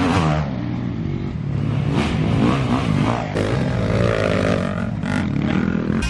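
Dirt bike engines revving as riders pass along the track, the pitch rising and falling repeatedly with the throttle.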